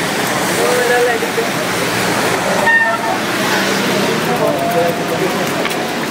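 Steady rushing noise of a bicycle riding on a wet road in the rain, heard on a camera mounted on the bike, with people's voices calling over it.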